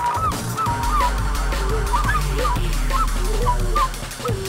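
Live drum and bass music led by a wind instrument playing short, bending, honking notes in quick phrases. Under it are drums and a held deep bass note.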